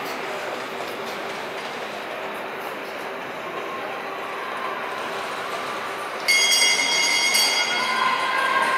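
Speed skates' steel blades scraping and cutting the ice in a steady hiss as two skaters sprint away from the start of a 500 m race in an echoing indoor rink. About six seconds in, a louder, steady high-pitched ringing starts suddenly.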